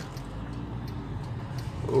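Steady low hum of a car's engine and tyres heard from inside the cabin while driving. A man's voice starts near the end.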